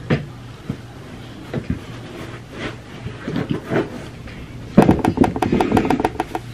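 Things being handled and rummaged through: scattered soft knocks and rustles, then a burst of rapid clicking and rattling about five seconds in, the loudest part.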